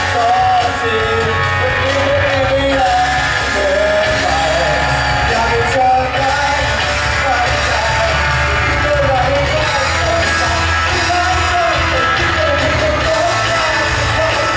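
A male singer singing live into a microphone over loud pop-rock backing music played through a PA, with the audience yelling along.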